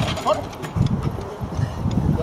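A Belgian shepherd dog's paws knocking against the A-frame scaling wall as it climbs over during the retrieve-over-wall exercise, with a man's voice.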